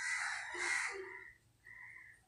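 A crow cawing: harsh calls through the first second and a half, then a faint short call near the end.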